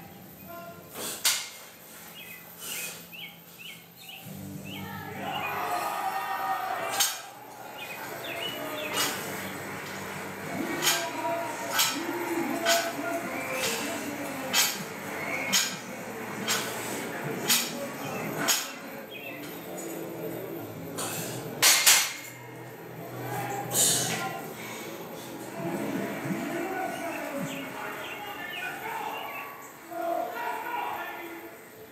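Barbell plates clinking against the bar about once a second through a set of bench press reps, over background music.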